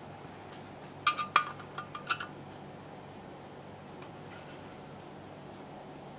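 A handful of sharp metal-on-metal clinks, each with a brief ring, come about one to two seconds in as tools and parts are handled on a steel workbench. After that only a faint steady hum remains.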